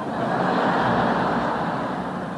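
A large audience laughing together, swelling in the first second and then slowly dying away.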